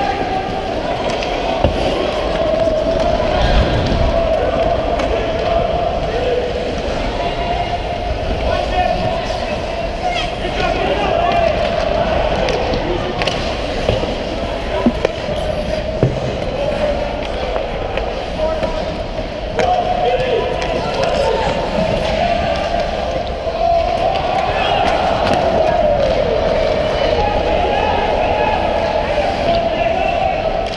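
Youth ice hockey game heard from a skater on the ice: skate blades scraping the ice and sticks clacking on the puck, with a few sharp knocks of puck or stick against the boards, all echoing in a large rink.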